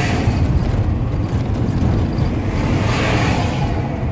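Engine and road noise of a moving car heard from inside the cabin, a steady low rumble, with an oncoming lorry rushing past about three seconds in.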